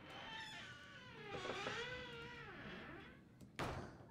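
Wooden double doors being pulled shut: a long, wavering hinge creak for about three seconds, then a single knock as the doors meet just before the end.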